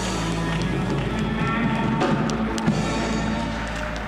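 Church worship band playing on at the close of a gospel song, with a few drum and cymbal hits about two to three seconds in; a held, wavering sung note ends right at the start.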